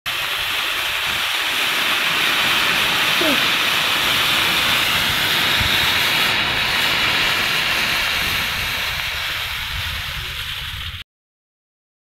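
Potassium nitrate and sugar mixture burning with a steady, loud hiss. The hiss cuts off suddenly about eleven seconds in.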